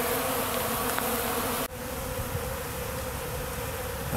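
Many honeybees buzzing in flight, a steady hum; about two seconds in it drops suddenly to a quieter buzz.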